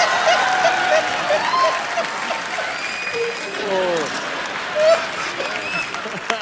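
Studio audience applauding, with voices calling out over the clapping.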